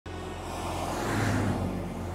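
Road traffic with a car passing close by, swelling to its loudest just after a second in and then easing off.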